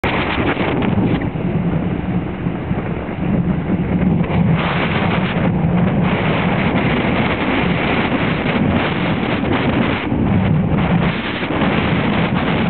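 Wind buffeting the camera's microphone: a loud, steady rumbling noise that rises and dips with the gusts.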